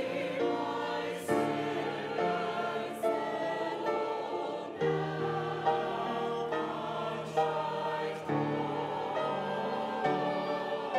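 Church choir singing in parts, holding sustained chords, with the low notes moving to a new pitch about every three and a half seconds.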